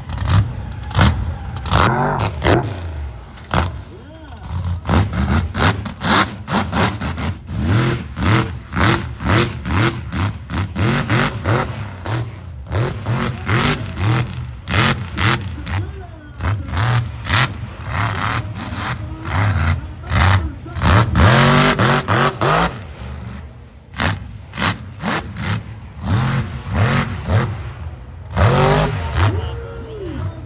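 Lifted mud truck's engine revving hard again and again as it drives a freestyle run on dirt, the revs rising and falling in quick surges.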